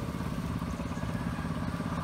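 A small engine running steadily with a fast, even putter.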